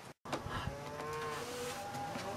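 A cow mooing: one long call that starts about half a second in and lasts about a second.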